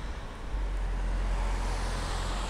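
Road traffic noise: a steady low rumble of vehicles on a nearby road, a little louder from about half a second in.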